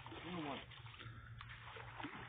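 Faint splashing of a hooked catfish thrashing at the water surface as it is reeled in, with a couple of light ticks.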